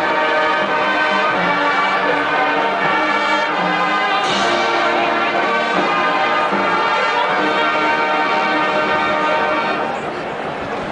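Marching band brass playing slow, sustained chords that change every second or so.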